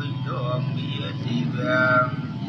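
A voice in long, drawn-out, gliding sung notes, twice, over background music with a steady low hum.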